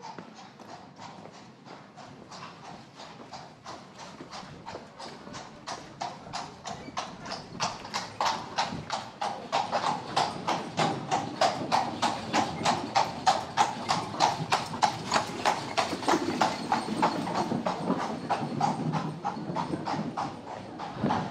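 Horse's hooves clip-clopping on cobblestones at an even trot, about four strikes a second, growing louder over the first half as the horse approaches and loudest about two-thirds of the way through, with a low rumble underneath.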